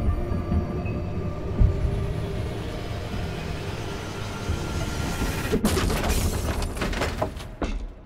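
A sound-design mix of a deep rumbling ambience under a sustained musical pad of steady tones. From about five and a half seconds in, a quick run of sharp knocks and clatters comes in, and then the whole mix fades out near the end.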